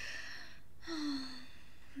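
A woman's breathy gasp, then a short voiced hum falling slightly in pitch: a shocked, sympathetic reaction to bad news.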